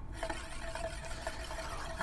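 Euler's disk spinning and rolling on its mirror base: a quiet, steady whirr with a faint tone in it and a few light ticks.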